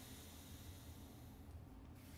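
Faint, steady exhale through one nostril in alternate-nostril breathing, with the other nostril held shut by hand. It stops near the end.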